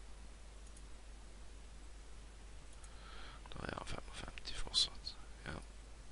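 Room tone, then about halfway through a few seconds of soft, muttered speech-like sound mixed with short clicks, the loudest one near the end.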